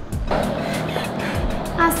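Background music: a sustained, murky drone under a fast, steady ticking beat, about four to five ticks a second. Near the end a woman gives a hesitant "ah".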